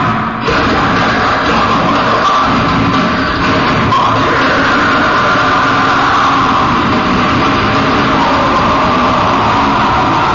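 Heavy metal band playing live, with loud distorted electric guitars and drums and a brief dip in the sound just after the start.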